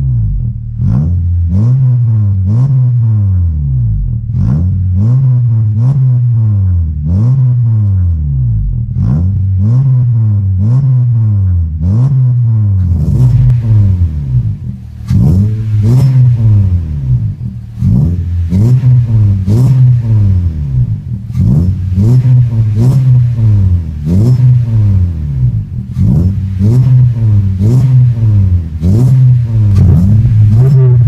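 Honda Civic engine with an aftermarket full exhaust and air intake, revved over and over in short blips from idle. Each rev rises and falls in pitch, about one a second. In the second half it is heard from behind the car at the exhaust outlet, louder and sharper-edged.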